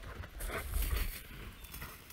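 Quick footfalls pattering in snow, likely a dog running, over a low wind rumble on the microphone.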